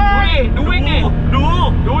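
Steady low rumble of a BMW E34 520i on the move, its M20 straight-six engine and road noise heard from inside the cabin, under talk.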